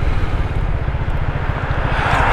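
Zontes 350E scooter's single-cylinder engine running at low speed while riding slowly through traffic: a steady low rumble with a fast even firing pulse, over a constant noise of road and air.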